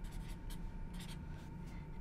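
Marker pen writing on a paper pad in a series of short strokes.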